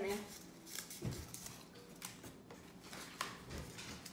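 A small folded slip of paper being unfolded by hand: faint crinkles and rustles, with a dull thump about a second in.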